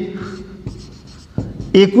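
Marker pen writing on a whiteboard: faint strokes of the tip against the board.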